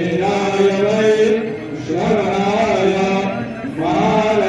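Devotional aarti chanting, sung in long held phrases with a short break about two seconds in and another near the end.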